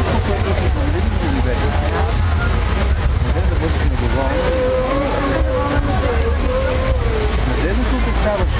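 Large illuminated fountain's water jets rushing steadily, with a crowd of onlookers talking over it; the fountain runs without music.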